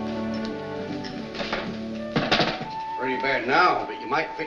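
Orchestral film score with sustained strings that ends about two seconds in, with a few knocks around the change. A voice follows in the last second or so.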